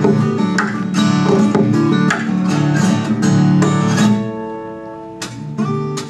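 A solo acoustic guitar playing a busy run of plucked and strummed notes. About four seconds in, the notes are left to ring and die away, with a couple of sharp plucks near the end.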